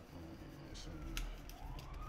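An emergency-vehicle siren, its wail rising steadily in pitch in the second half, over a low rumble.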